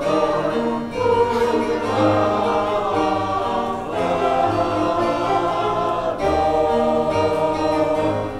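Church choir singing an anthem in long, sustained chords.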